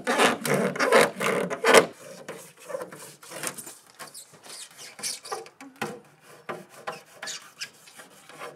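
A thin line sawn back and forth under a car's plastic spoiler lip, cutting through the double-sided tape that holds it to the boot lid. The strokes come about four a second and are loud for the first two seconds, then go on fainter and less regular.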